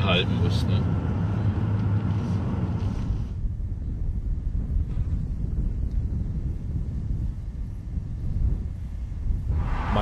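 Mercedes-Benz C-Class test car driving, heard from inside the cabin as a dense engine and road rumble. About three seconds in it gives way to a quieter, steady low rumble of the car running along a dirt road.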